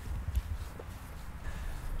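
Footsteps walking across a grass lawn, soft and irregular, over a low rumble on the microphone.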